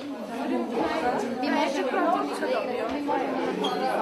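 A crowd of young women chattering, many voices talking over one another at once.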